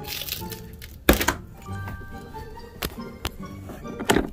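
Background music with a melody, cut by a few sharp knocks and clunks, the loudest about a second in. The knocks come from a casement window being unlatched and swung open.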